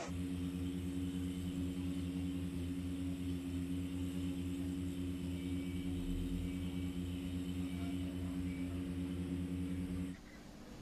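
Engine of a fire-service aerial ladder truck running at a steady speed: a low, evenly pulsing hum that holds constant throughout.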